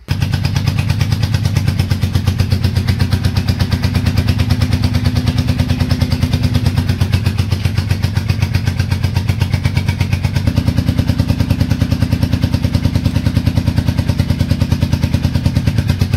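1984 Honda Shadow 700 V-twin idling with a steady, even pulse while it fires on the rear cylinder only; the front cylinder is getting no spark, which the owner suspects is a bad coil igniter. The tone shifts slightly about ten seconds in.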